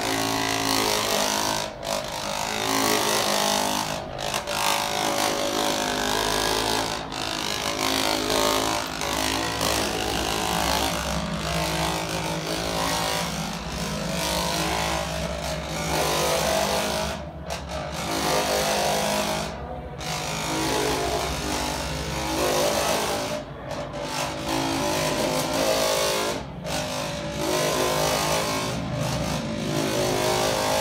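Handheld electric percussion massager with a red infrared lamp head running against a person's lower back: a steady motor buzz whose pitch shifts as the head is pressed and moved, with brief dips in level several times.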